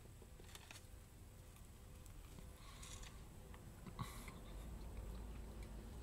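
Faint chewing of a mouthful of sticky glazed Chelsea bun, with a few soft mouth sounds about three and four seconds in.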